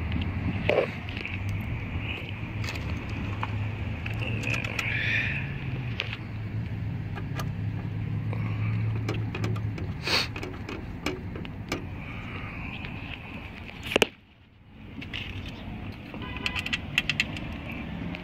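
Scattered small metallic clicks and clinks of a Phillips screwdriver and screws working on a car radio's metal mounting bracket, over a steady low hum. The sound nearly drops out for about a second past the middle.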